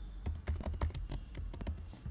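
Typing on a computer keyboard: a quick run of keystrokes that starts about a quarter second in and stops just before the end.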